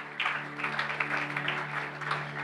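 A congregation applauding, many hands clapping, over a steady held chord of background music.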